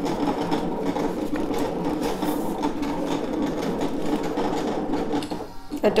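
Brother ScanNCut 2 (CM350) cutting machine running a cut: its motors whir steadily as the blade carriage and mat move, cutting shapes out of designer paper. The sound eases briefly near the end.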